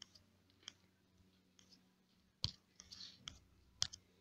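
A few faint, scattered clicks, the two loudest about two and a half seconds in and just before the end: fingertip taps on a smartphone touchscreen.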